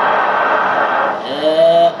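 For about the first second, a dense rushing noise with no clear pitch. In the second half, a man's voice holds one long drawn-out sound that bends in pitch.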